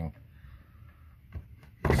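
Two short faint knocks a little past the middle from a wooden sliding-door trim panel being handled.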